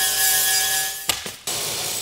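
Handheld angle grinder cutting through square metal tubing: a steady high whine over a loud grinding hiss. It stops about a second in and is followed by a quieter, softer scraping noise.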